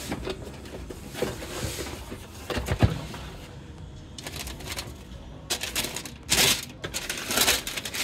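A cardboard gift box being handled and its lid opened, with a sharp knock about three seconds in, then tissue paper crinkling and rustling in several short bursts as it is unwrapped.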